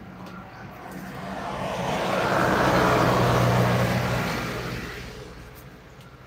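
A motor vehicle passing by on the road: its tyre and engine noise swell to a peak about three seconds in and fade away again.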